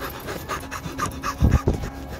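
Rapid, heavy panting in quick short breaths, with two loud low thumps about a second and a half in as the handheld camera is jostled.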